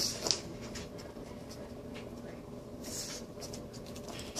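A pug snuffling and nosing at the carpet: short scratchy sniffs and rustles, with a sharp click about a third of a second in and another flurry near the end.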